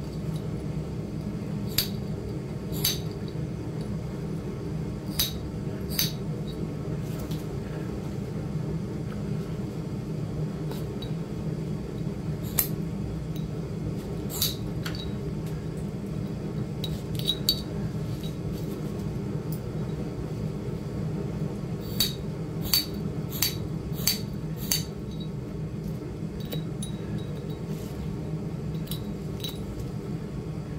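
Sharp, glassy clicks of flakes snapping off a raw flint piece as it is pressure-flaked with a metal-tipped hand tool, about a dozen of them: singly at first, then a quick run of five or six late on. A steady low hum runs underneath.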